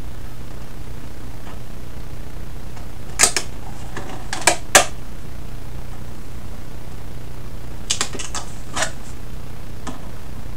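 A few short, sharp clicks and taps from a thin white box being handled and turned in the hands, in small groups about three seconds in, around four and a half seconds, and near eight to nine seconds, over a steady low hum.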